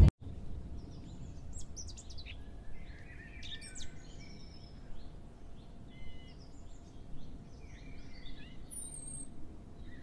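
Small birds chirping, a scatter of short, high calls overlapping one another, over a faint low background hum.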